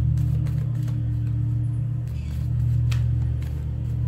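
Background music: a steady low drone with one note held through the first half, and a few faint clicks over it.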